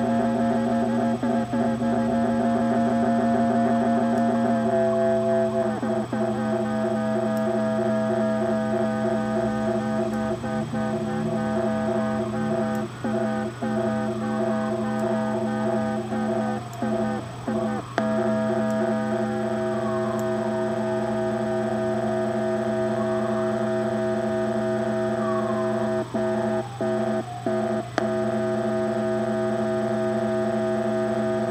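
Software drone synthesizer built in Pure Data, played through a small Danelectro Honeytone guitar amp: a sustained, buzzy, many-toned drone. The lower notes shift about four seconds in. Slow filter sweeps rise and fall through the middle, and the sound cuts out briefly several times.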